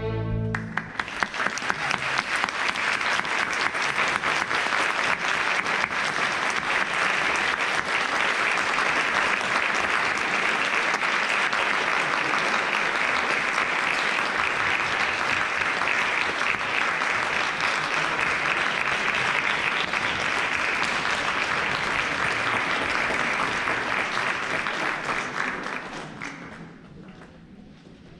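Audience applause in a theatre, a dense steady clapping that starts as the string orchestra's final chord dies away in the first moment and fades out over the last few seconds.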